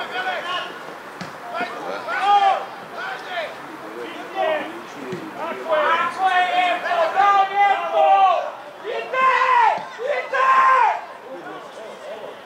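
Men shouting short, high-pitched calls to each other on a football pitch, one cry after another, thickest in the second half.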